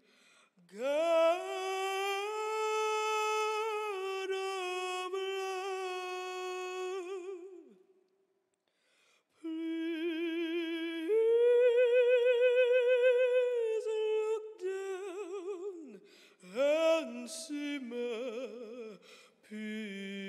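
A woman singing solo and unaccompanied: long held notes with a wide vibrato, a short pause about eight seconds in, then a louder, higher held note, followed by shorter phrases.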